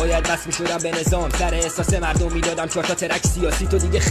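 Persian-language rap freestyle: a male voice rapping over a hip-hop beat, with deep bass notes that drop sharply in pitch several times.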